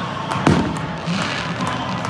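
One sharp firecracker bang about half a second in, with a short echo, over the continuous noise of a large crowd with some chanting.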